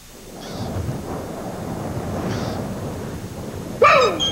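A low, steady rumble swells up over the first second and holds. Near the end, a well's rope pulley gives one short, sharp squeak that falls in pitch.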